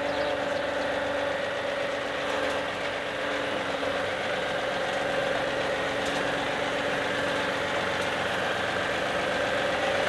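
John Deere 2038R compact tractor's three-cylinder diesel running steadily as the tractor backs down the trailer ramps, with a steady whine over the engine.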